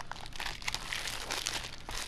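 Clear plastic shrink wrap on a Blu-ray case crinkling as it is handled and peeled, a run of small irregular crackles.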